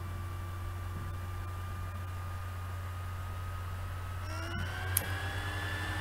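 Steady low electrical hum with faint thin whine tones over it, one of them rising slightly about four seconds in; a single sharp click about five seconds in.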